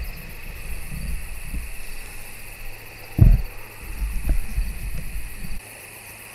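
Steady insect chorus, with rumbling handling noise from the camera being repositioned on its mount and one loud thump about three seconds in; the handling stops shortly before the end.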